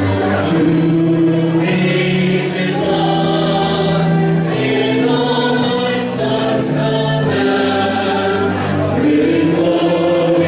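A choir singing in long held notes that move step by step from one chord to the next.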